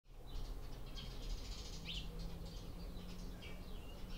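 Birds chirping and singing: many short calls with quick pitch glides, over a faint low steady hum.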